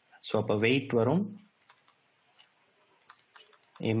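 A man's voice for about a second, then faint, irregular clicks and taps of a stylus on a pen tablet as a word is handwritten.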